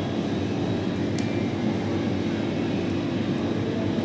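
Steady low mechanical hum with a constant drone and hiss, the background noise of machinery running in the room, with one faint tick about a second in.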